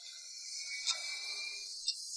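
Tension cue in the soundtrack: a clock-like tick about once a second over a faint high hiss that slowly swells, with a thin held high tone fading out near the end.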